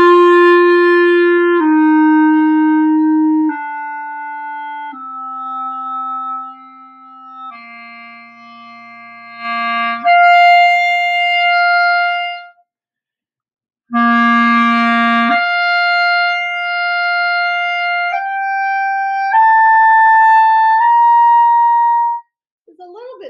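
Jupiter JCL1100S wooden B-flat clarinet, on its stock mouthpiece and ligature, playing held long tones for a pitch check against a tuner. Each note lasts about one and a half to two and a half seconds. It steps down five notes in the low register, leaps up to a note a twelfth higher, pauses briefly, plays a low note and its twelfth again, then steps up three notes.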